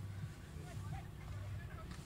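Low steady background rumble with a few faint, distant voices calling out.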